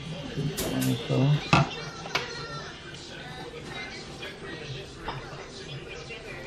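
A few sharp clicks and taps from handling the plastic side-mirror housing and its parts, four in the first two seconds, with a brief low voice early on.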